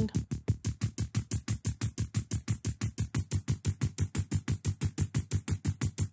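Analog Lab synthesizer part playing a fast, evenly repeating run of short notes. It has been layered with two detuned copies, one a semitone down and one a semitone up and slightly shifted in time, to widen the stereo image, so in solo it sounds off tune.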